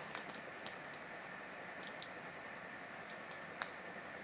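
Faint, scattered small clicks from fingers handling and folding a small piece of wet wool felt on bubble wrap, over a steady faint hiss.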